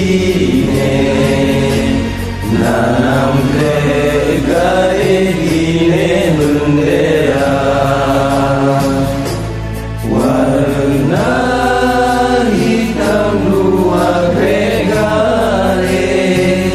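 Acehnese song: voices singing in a chanting style over a steady bass and an even percussion beat, with brief lulls about two seconds and ten seconds in.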